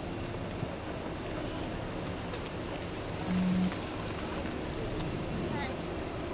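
Steady background noise of traffic and indistinct voices, with a short low tone a little past halfway.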